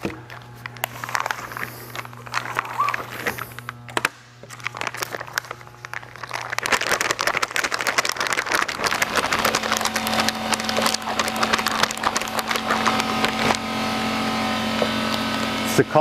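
Plastic crinkling and rustling as a bag of resin and the plastic sheeting under it are handled, sparse at first and dense from about six seconds in. A steady machine hum comes in underneath from about nine seconds.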